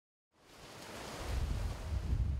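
Ocean surf washing in on a rocky shore, with wind rumbling on the microphone. It fades in from silence over the first second and grows louder.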